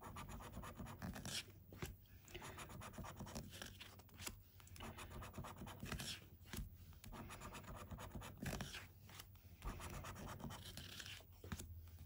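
A coin scratching the scratch-off coating from a paper scratchcard: runs of quick back-and-forth strokes broken by short pauses.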